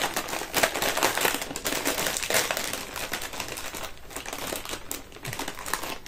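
A large crisp packet being handled and pulled open: a dense crackling crinkle of the plastic film with many sharp crackles, easing for a moment about four seconds in.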